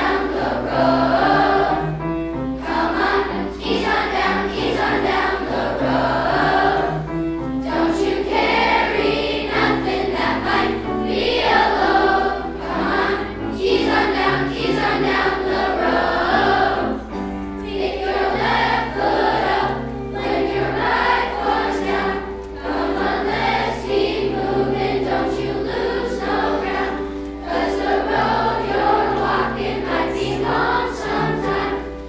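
A large children's choir singing a song in parts, with grand piano accompaniment.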